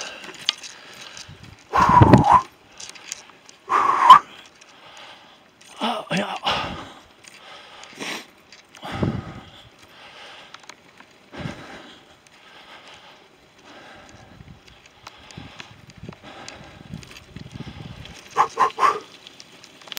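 A cyclist's heavy, voiced breaths and groans every two to three seconds as he pedals hard, out of breath after a steep climb, over faint tyre and wind noise. The loudest is about four seconds in.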